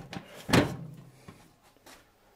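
Metal clamp ring being closed around the rim of a galvanized steel bin to seal it to the cyclone lid: one sharp metallic clack about half a second in, followed by a few faint clicks.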